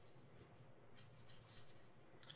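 Near silence: faint room noise in a pause on a video call, with a faint rustle about a second in.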